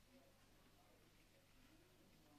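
Near silence: faint background hiss.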